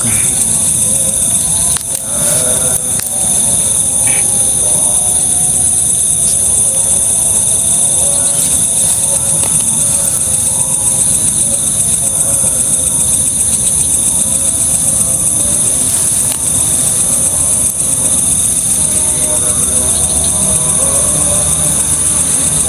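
Crickets in a steady, high-pitched chorus, a continuous rapid trill.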